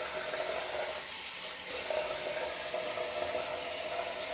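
Water running steadily from a tap into a sink: a low, even hiss with a faint tone that comes and goes.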